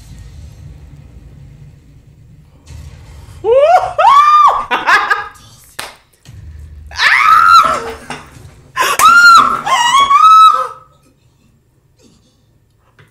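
A very high-pitched voice screaming in three drawn-out, rising-and-falling cries, starting about three and a half seconds in and ending about a second before the close, over a low background hum.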